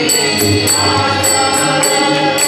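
Devotional group singing in unison, accompanied by a two-headed barrel drum beating low and metallic jingling in a steady beat.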